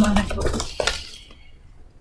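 A few short clicks and rustles of handling as a paper instruction booklet is picked up and waved, all in the first second.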